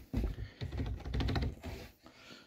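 Irregular light clicks, knocks and rattles from a boat's removable carpeted deck extension panel being handled to slide it out of its place.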